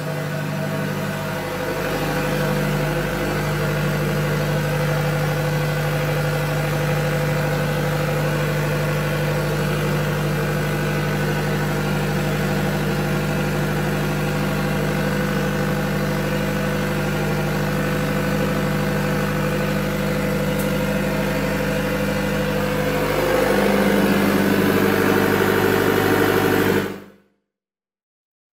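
Kubota V3800T four-cylinder turbo-diesel generator sets running steadily at about 1500 rpm as one is synchronised to the other: a steady engine drone with a low hum. About 23 seconds in the sound gets louder and the note shifts. It cuts off suddenly near the end.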